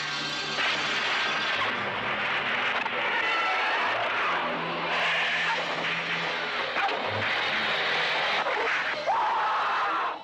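Film soundtrack action effects: a dense, continuous wash of noise whose character shifts every second or two with the edits, with faint low tones underneath.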